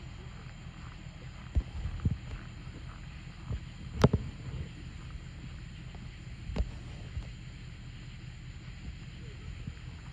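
Steady low rumble of wind on the microphone, with a few scattered dull thumps and one sharp click about four seconds in.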